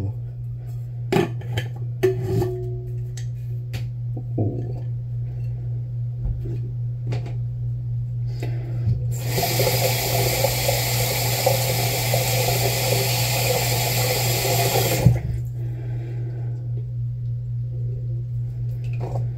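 Bathroom sink tap running for about six seconds, starting about nine seconds in and shutting off suddenly. Before it come small clicks and knocks of handling, and a steady low hum lies underneath.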